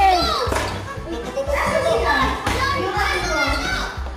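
Children shouting and chattering in a hall over background music with a steady bass beat.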